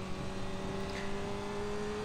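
Honda CBR600F4i sportbike's inline-four engine running at a steady pitch under wind and road noise, heard from an onboard camera on a track lap.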